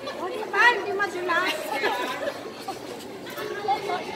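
Several women's voices chattering and calling out over one another, with a few high, rising exclamations in the first two seconds.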